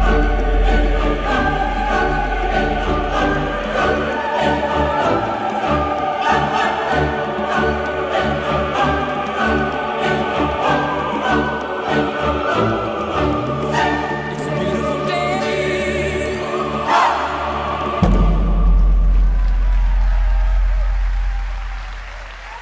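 Show music with a choir singing over sustained chords. A deep bass swell comes in at the start and again about 18 seconds in, and the music fades near the end.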